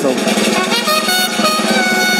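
Live salsa band music: held brass notes over a steady drum and percussion beat.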